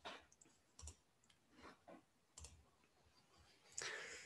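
Faint computer mouse clicks, several spaced out over a few seconds, the loudest near the end, in near silence.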